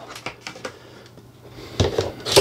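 Light handling clicks, then a sharp click near the end as a camera's Ulanzi Falcam F38 quick-release plate snaps into its base on the tripod head.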